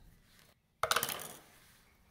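A brief clatter on a wooden cutting board about a second in, fading within half a second, then faint room tone.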